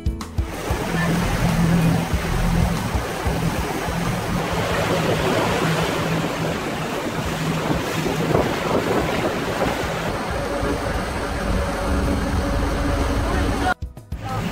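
Motorboat under way on a canal: its engine hums steadily beneath the rushing, churning water of its wake, with wind buffeting the microphone. The sound stops abruptly just before the end.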